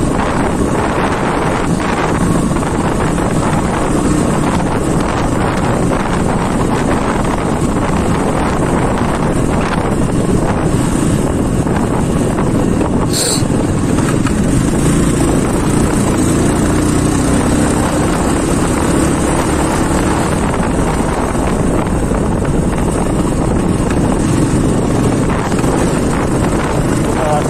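Motorcycle engine running steadily while riding, heavily overlaid by wind buffeting on the microphone. A brief high-pitched chirp about halfway through.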